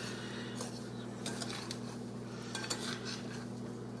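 Fresh blackberries coated in sugar and flour being stirred in a glass bowl, a utensil scraping and clicking faintly against the glass.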